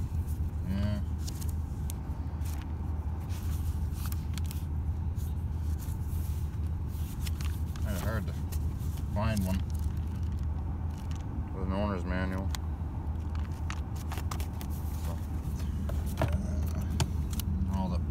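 1985 Oldsmobile Delta 88 engine idling steadily after warming up, heard from inside the cabin, with the rustle and clicks of the owner's manual's pages being leafed through.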